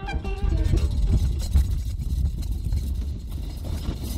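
A loud, steady low rumble, with brass music cutting out just at the start.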